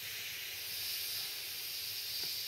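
One long breath blown by mouth into the valve of an Intex air mat: a steady hiss of air that ends right at the close, with a short break for a breath just before it.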